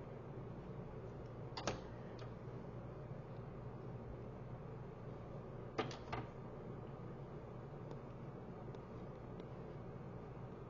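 Light handling of a cardstock craft model: a few soft clicks or taps, one about two seconds in and two close together around six seconds, over a steady low room hum.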